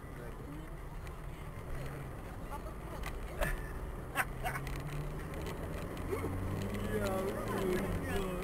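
Car running along a road, heard from inside the cabin: a steady low engine and tyre drone, with two sharp clicks about three and a half and four seconds in. A person starts talking about six seconds in.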